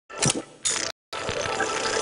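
Designed sound effects for an animated TV ident: two short, harsh noisy bursts, a sudden split-second cut to silence just before a second in, then a longer, denser burst of the same noisy sound.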